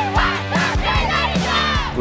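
Background music with a steady beat, over which a group of teenage girls shout a team cheer together as a huddle breaks.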